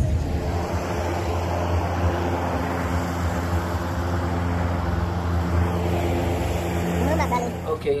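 Steady low hum of a motor vehicle engine running, even and unchanging until it cuts off just before the end.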